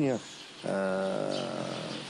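A man's long drawn-out hesitation sound, a held 'eeh' between words, starting about half a second in and sustained at a nearly steady pitch, falling slightly, for more than a second.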